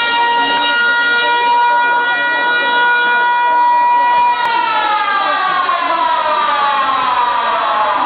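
A siren sounding one steady pitch, then winding down in a long, even falling glide from about halfway through.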